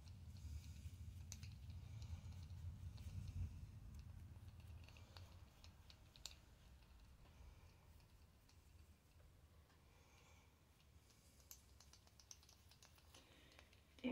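Near silence: room tone with a few faint, scattered clicks and a low rumble that fades after the first few seconds.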